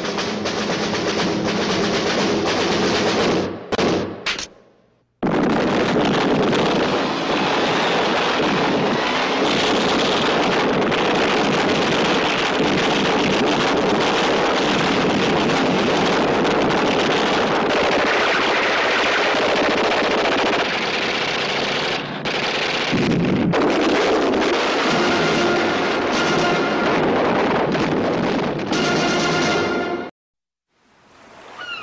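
War-film trailer soundtrack: near-continuous gunfire mixed with music, broken by a short gap about four to five seconds in.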